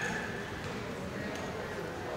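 Faint background voices and room noise of a large hall, with a few faint taps.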